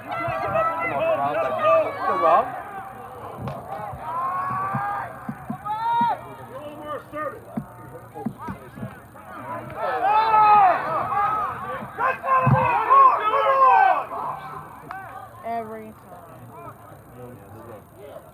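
A flock of geese honking, many calls overlapping. They are loudest at the start and again from about ten to fourteen seconds in.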